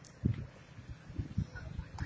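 Low muffled thumps and rumble of wind buffeting and handling noise on a handheld phone microphone, with faint distant voices near the end.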